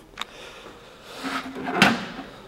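Handling noise from a hard drive being shifted in its metal drive caddy: a light click just after the start, then a scraping rustle that builds to a sharp knock near the end.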